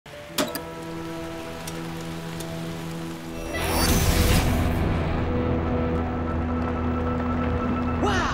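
Sustained synth music score over cartoon rain, with a loud crash of thunder about halfway through as the storm breaks, after which a low drone holds under the music.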